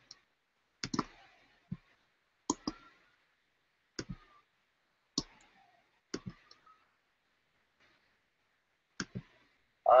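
A series of sharp clicks close to the microphone, roughly one a second, several of them in quick pairs.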